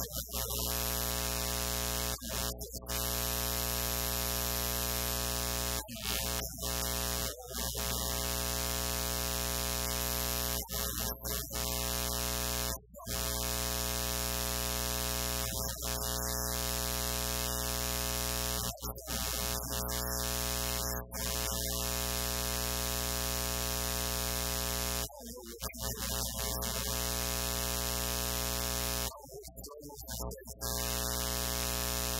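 A loud, steady electrical buzz with many even overtones at one unchanging pitch, typical of mains hum in a sound system. It cuts out briefly about a dozen times at irregular moments and drowns out any speech.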